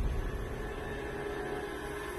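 Tense background score: a low, sustained drone under a steady held tone, with no beat.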